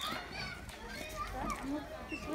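Background voices of children and adults chattering and calling out, fairly faint and scattered.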